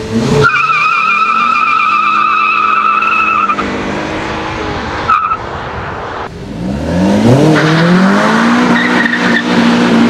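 Volvo V50 T5 turbocharged five-cylinder launching from a standstill with its tyres squealing and wavering for about three seconds over held engine revs, with a short further chirp about five seconds in. In the second half the engine accelerates hard with revs climbing, then holds a steady loud note.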